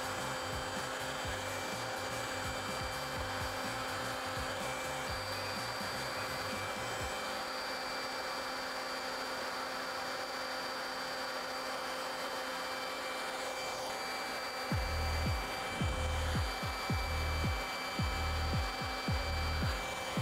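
Leaf blower running steadily at full speed, blasting an upward stream of air: a rushing of air over a steady motor whine.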